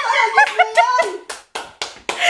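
A woman laughing in quick, high bursts, followed by a few sharp hand claps.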